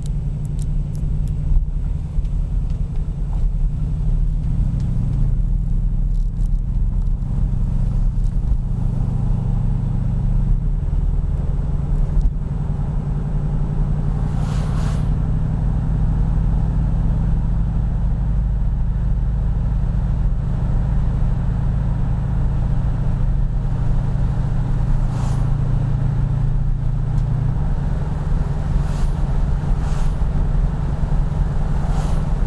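The fuel-injected Chrysler 440 cubic-inch (7.2 L) V8 of a modified 1974 Jensen Interceptor on the move, giving a deep, steady throb. The engine note steps to a new pitch a few times as the load or road speed changes.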